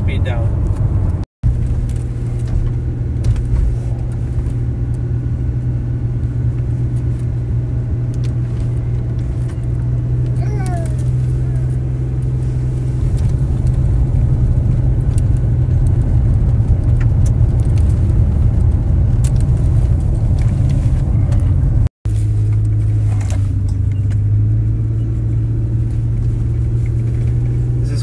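Car engine and road noise heard from inside the cabin: a steady low drone as the car climbs a steep, winding road under load, with the engine labouring. The sound drops out briefly twice, about a second in and again about two-thirds of the way through.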